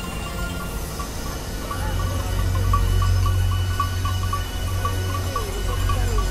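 Electronic soundtrack music: a low drone that swells about two seconds in, under a quick repeating high tick, with a few gliding tones near the end.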